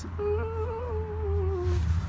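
A man humming one long, slightly wavering note that sinks a little in pitch toward the end, over a steady low rumble.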